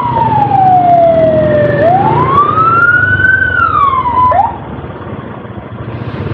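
Electronic emergency siren on a slow wail: the tone falls, rises and falls again, gives a short blip and cuts off about four and a half seconds in. Motorcycle engine and road noise carry on underneath.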